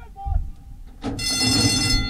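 A low thump, then a racetrack starting-gate bell ringing continuously from about a second in, with a low rumble under it: the signal that the gates have opened and the race has started.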